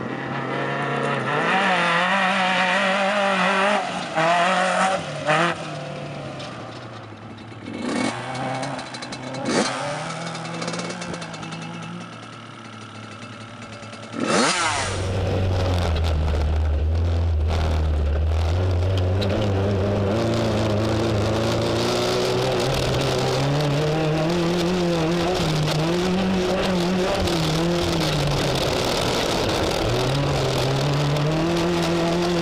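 Off-road race truck's engine revving as it drives over desert dirt, its pitch rising and falling. About halfway through, the sound switches to the close, constant engine note under load with heavy low rumble and wind hiss, as picked up by a camera on the truck's hood.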